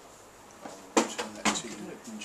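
Two sharp knocks, about a second in and again half a second later, with handling sounds as an item is put back into its container.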